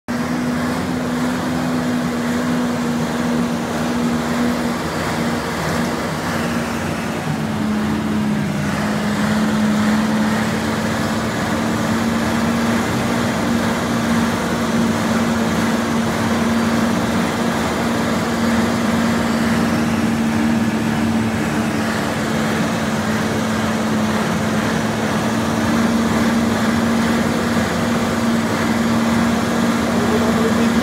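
A loud, steady engine or machine drone with a constant low hum that steps slightly lower in pitch about five seconds in, over a continuous rushing noise.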